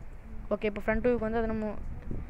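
A person's voice making long, drawn-out voiced sounds, held for about a second, that the recogniser did not write down as words.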